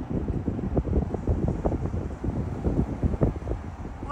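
Car moving slowly, heard as a low, irregular rumble with wind buffeting on the microphone.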